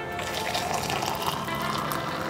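Hot water pouring in a steady stream into the plastic chamber of an AeroPress coffee maker, onto ground coffee, with music underneath.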